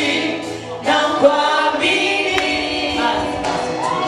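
Congregation singing a gospel worship song together, many voices in chorus.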